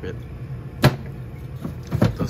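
Fume hood sash being pulled down and jamming: a sharp knock about a second in and another thump near the end, over a steady low hum.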